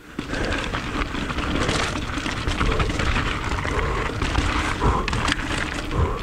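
Mountain bike rolling fast down a loose gravel trail, heard from a chin-mounted action camera: tyres crunching over gravel and small rocks, with the bike rattling and a steady low rumble of wind on the microphone.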